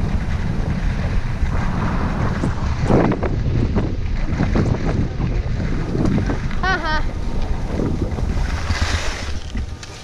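Wind buffeting the microphone of a skier's camera at speed, over the scrape of skis on packed snow. About nine seconds in the skis hiss through a braking skid and the wind noise falls away.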